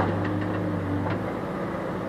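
Diesel engine of a Case backhoe loader running steadily between loads, with a faint knock of stone about halfway through.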